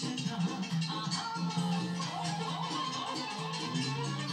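Romanian folk dance music with violins over a steady beat, heard through a television's speaker.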